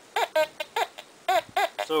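Teknetics T2 metal detector giving short beeps as its search coil sweeps over a coin lying on an iron nail. There are about half a dozen brief beeps, each rising and falling in pitch. Only the coin's tone sounds and the nail is not reported: the detector separates the coin from the iron.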